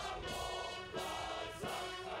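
A line of young male recruits singing together in chorus.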